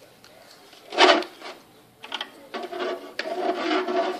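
Plastic wrestling action figures handled and pushed about in a toy ring, with a sharp burst about a second in and a run of uneven rubbing and scraping in the second half.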